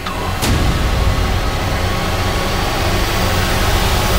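Cinematic trailer sound design: a sharp hit about half a second in, then a dense low rumble and hissing noise that swells steadily louder, with faint tones gliding upward, a rising build-up of tension.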